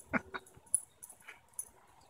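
Two small puppies play-fighting, with two short, quick dog cries close together in the first half second.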